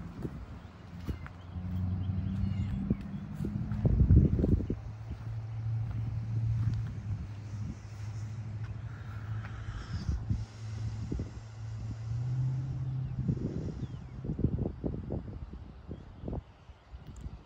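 Steady low hum of a running motor, rising in pitch near the end, with gusts of wind buffeting the microphone.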